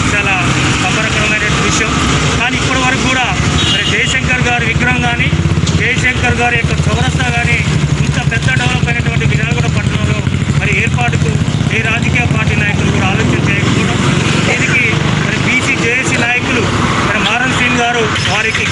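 A vehicle engine idling steadily, a little louder in the middle, under a man's continuing speech.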